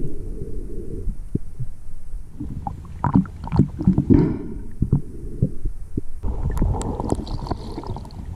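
Muffled underwater noise picked up by a submerged camera: a low rumble of moving water with scattered knocks and clicks, and a short gurgle about four seconds in. About six seconds in the water noise becomes louder and brighter.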